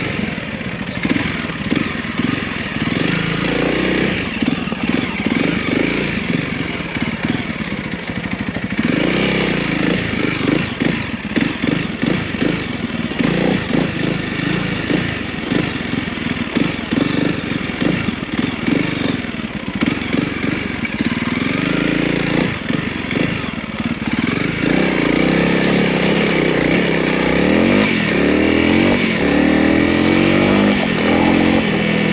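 Honda CRF300L's single-cylinder four-stroke engine running at low speed over rough, rocky ground, the note rising and falling with the throttle. Near the end it pulls steadily louder and rises in pitch as the bike accelerates along a dirt track.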